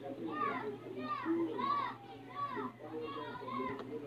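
Children's voices at play in the background, a run of high rising-and-falling calls about twice a second, over a steady low hum.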